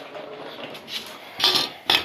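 Steel track bars being set down on a concrete floor: a rustle of handling, then two sharp metal clanks about half a second apart near the end.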